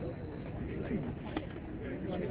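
Outdoor background of faint voices, with a bird cooing in short low calls and a brief sharp click about three-quarters of the way through.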